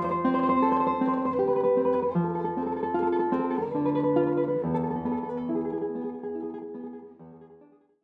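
Solo guitar music, a melody of plucked, ringing notes, fading out over the last second or two.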